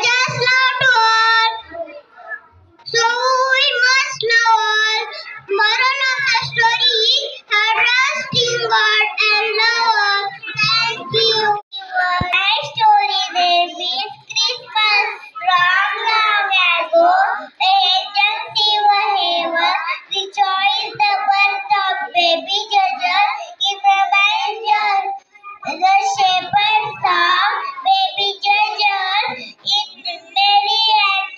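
A group of young children singing together.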